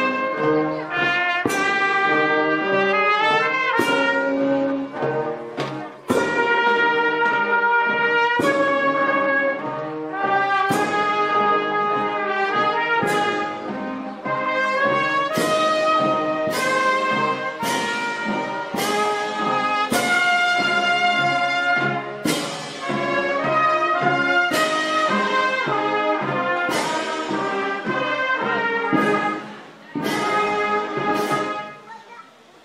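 Marching brass band playing a slow march: trumpets and tuba holding long sustained chords over a bass drum and clash-cymbal stroke about every two seconds.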